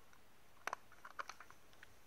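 Small plastic clicks as a screwdriver tip pries at the seam of a battery doorbell push-button's plastic casing to open it. A close pair of sharp clicks comes about two-thirds of a second in, followed by several fainter ticks.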